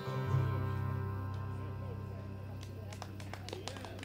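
The last chord of an acoustic guitar and a lap-played string instrument ringing out and slowly fading at the end of a song, with a few faint clicks near the end.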